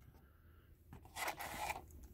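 Hands handling trading cards and a foil card pack: near silence for about a second, then a short rustling scrape as the pack is drawn out of its cardboard box.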